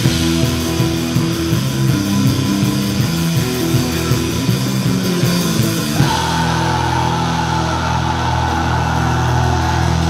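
Live hardcore punk band playing loud distorted guitars, bass and drums. About six seconds in the music shifts abruptly to long held low chords, and the high cymbal haze thins out.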